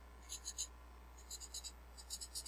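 Marker writing on a whiteboard in short squeaky strokes: three quick strokes, a pause of about half a second, then four more.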